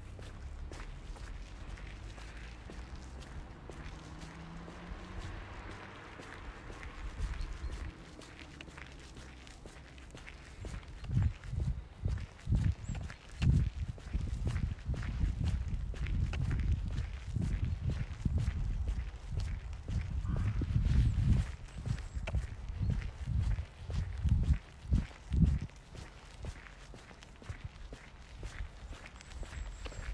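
Footsteps of a person walking on a paved sidewalk, picked up as heavy low thuds about two a second through most of the middle of the stretch.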